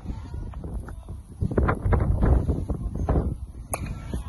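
A baseball bat hitting a pitched ball once near the end: a single sharp crack. Before it is a low rumbling noise on the microphone.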